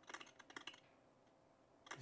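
A short run of faint, quick clicks in the first second, then near silence.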